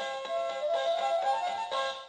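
Electronic sound-book button panel playing a short tinny tune: quick notes climbing in steps, stopping near the end.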